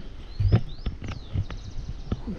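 A few quick, high, falling bird chirps, clustered about half a second to a second in, over a run of irregular soft knocks and bumps; the loudest knock comes about half a second in.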